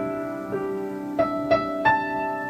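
Slow background piano music, with single notes struck over held chords.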